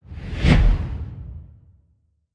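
Logo sting sound effect: a single whoosh with a deep low boom, swelling to a peak about half a second in and fading away over the next second.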